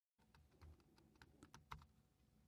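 Faint keystrokes on a computer keyboard: a short run of about seven quick taps as a single word is typed.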